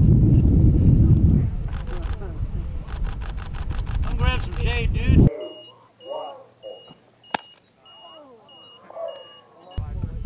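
Wind buffeting the microphone over people talking. It cuts off suddenly about halfway through, giving way to quieter talk and a short high electronic beep repeating about twice a second.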